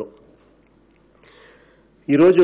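A pause in a man's speech into a desk microphone, with a faint intake of breath lasting about half a second, roughly a second and a half in.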